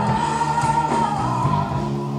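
Hard rock band playing live, a single long high note held over the full band.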